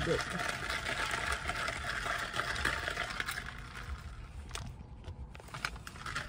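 Steady rushing hiss of air in a car's cabin, the sound of the ventilation fan blowing, thinning out about four seconds in, with a few light handling clicks near the end.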